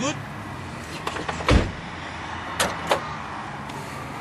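A car door slammed shut: one heavy thump about a second and a half in, followed by two light clicks, over a low steady hum.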